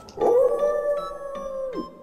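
A man imitating a wolf howl: one long held 'aooo' on a steady pitch that drops away near the end.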